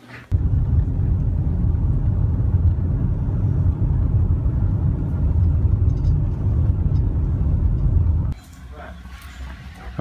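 Low, steady rumble of a car driving, heard from inside the cabin: road and engine noise. It cuts off suddenly about eight seconds in.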